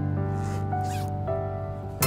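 Zipper on a fabric bag pulled open in two short strokes, over background music with sustained notes.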